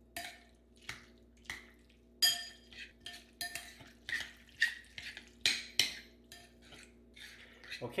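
Metal fork clinking and scraping against a ceramic bowl while stirring and breaking up a thick tuna salad, in irregular strokes about twice a second, some with a short ring.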